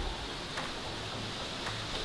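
Quiet room tone: a steady low hum and faint hiss, with a few light ticks about half a second and a second and a half in.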